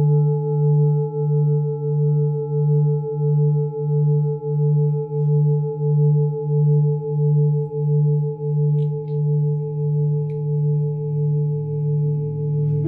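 Large Tibetan singing bowl ringing on, a deep hum with higher overtones above it that wavers in loudness about twice a second and fades only slowly.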